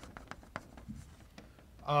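Chalk writing on a blackboard: a quick run of short taps and scrapes as a word is written, with a man's voice starting again near the end.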